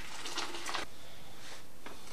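A stainless electric kettle being picked up and handled, giving a few light clicks and knocks over a steady background hiss.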